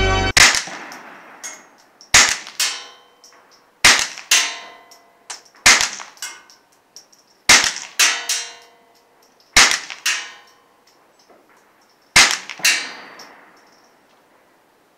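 Suppressed shots from a Taurus TX22 .22LR pistol firing subsonic rounds through a 9mm suppressor: about a dozen sharp cracks, mostly in pairs half a second apart, every two seconds or so. Organ music cuts off just at the start.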